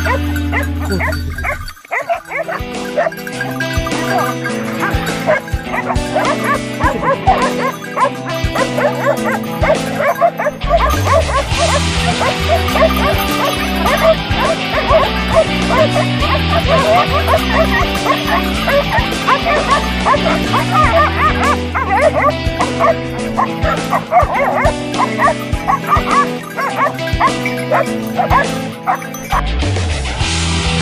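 A pack of Maremma hounds barking and yelping at a downed wild boar they have caught, over background music.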